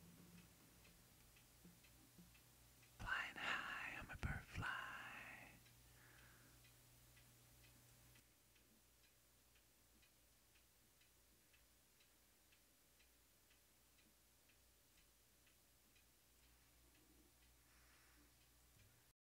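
Near silence, broken about three seconds in by a couple of seconds of a quiet, whispered voice. Faint ticking, about twice a second, runs underneath.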